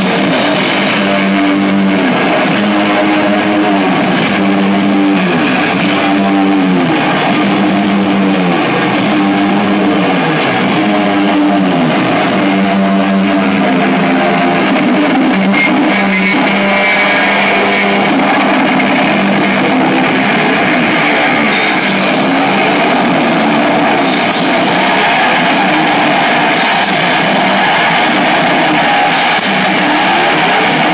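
Loud rock music led by electric guitar, with sustained, bending notes in the first half and repeated crashes in the second half.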